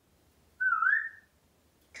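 African grey parrot giving a single short whistle, a bit over half a second long, that wobbles and rises in pitch.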